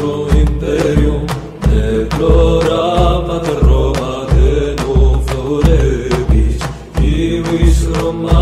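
A song sung in Latin by a male voice, chant-like, over a heavy low drum beat that lands about three times every two seconds, with sharp percussion hits between.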